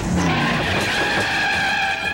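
Cartoon tyre-screech sound effect: the taxi cab's tyres squeal in one long, steady skid that cuts off sharply at the end, with background music under it.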